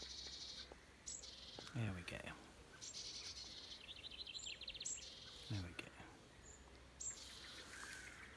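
Young jackdaw's raspy, hissy food-begging calls while it is hand-fed, coming in short bursts several times, one of them a fast stuttering run of calls near the middle.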